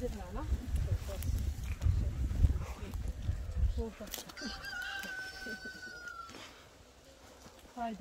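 Wind buffeting the microphone in a low rumble for the first few seconds, dying away as the camera moves inside the polytunnel. About halfway through comes one long, held, high-pitched animal call of about two seconds that falls slightly at the end.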